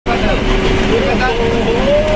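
Steady engine and road noise heard from inside a coach travelling fast, with a person's voice over it.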